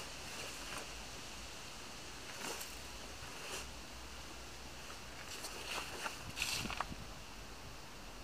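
Brief rustles and scuffs from a man's clothing and feet as he moves on leaf litter, over a steady background hiss; a few scattered rustles, then a louder cluster a little past the middle.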